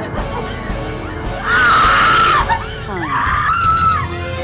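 A woman shrieking twice, each cry long, high and wavering, over film score music.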